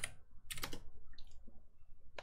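Computer keyboard typing: a quick run of key clicks about half a second in, then a few fainter key presses.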